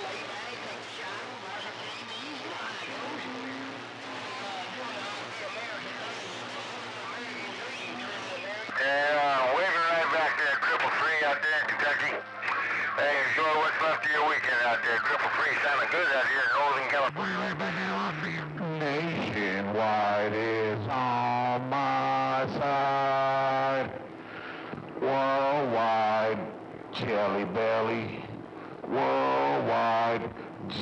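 Music with a voice coming over a CB radio channel through the radio's speaker, distorted. A weak, hissy signal for the first several seconds, then the music comes in loud about nine seconds in, with a steady bass line joining about halfway through.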